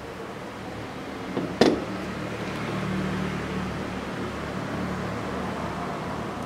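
A sharp knock about a second and a half in as motorcycle frame slider parts are handled, followed by a steady low hum.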